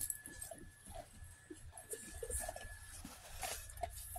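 Faint, irregular small noises from dogs moving and nosing around close to the microphone, among kibble scattered on the floor.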